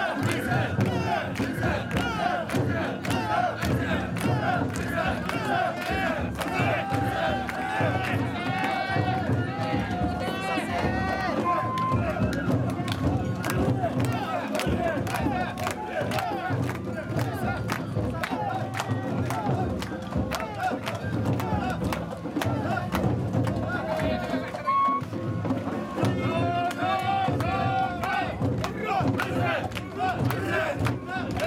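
A crowd of mikoshi (portable shrine) carriers chanting and shouting together as they heave the shrine, many voices overlapping, with a busy patter of sharp clacks throughout.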